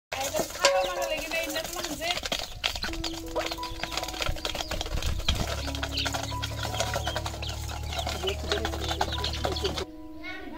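Ducks and chicks feeding from a metal bowl: dense, rapid clicking of bills pecking against the metal, with chicks peeping. Background music with held notes plays underneath, with a low bass coming in about halfway through and cutting off just before the end.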